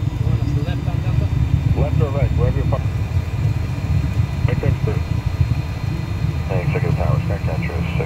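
Steady low rumble in the cockpit of a Cessna Citation 560 business jet rolling out on the runway after landing, the jet engines and wheels on the runway heard together.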